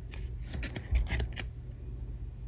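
Trading card handled and turned over in the fingers: a few short, light clicks and scrapes of card stock, the loudest about a second in.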